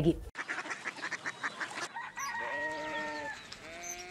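A farm animal calling twice, each call a drawn-out steady note; the first lasts about a second from a little past halfway, and the second starts near the end. Before the calls there is faint rustling with scattered clicks.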